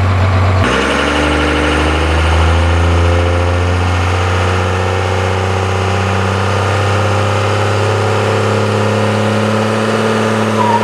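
Ford Super Duty pickup's turbo-diesel engine revving up about half a second in, then held at high revs with the pitch slowly climbing as it builds for a burnout.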